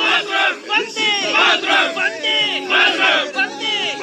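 A group of voices chanting and shouting in rhythmic bursts, each call falling in pitch, over held instrumental notes: a crowd-chant break within the song's music.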